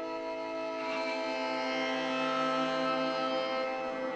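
Soma Dvina string instrument bowed, its sound run through the Wingie2 resonator's tuned caves and effects: a steady, held drone of several sustained tones.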